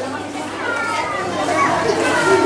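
Background chatter of a crowd with children's high voices calling and talking, in a large reverberant hall.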